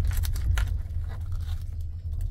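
Plastic wrapper of a disposable cutlery set being torn open and crinkled by hand, in several short crackly rips, over the steady low rumble of the moving train.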